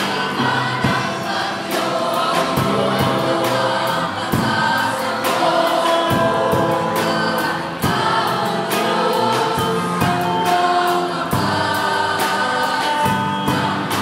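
Mixed choir of male and female voices singing a gospel song in harmony, with a regular beat underneath.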